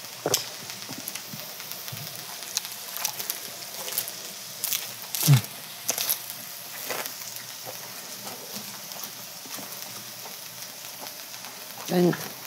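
Close-up chewing of a large lettuce wrap of grilled pork belly: wet mouth clicks and the crunch of leaves. Under it runs a steady faint sizzle from the griddle, and a short falling hum from the eater comes about five seconds in.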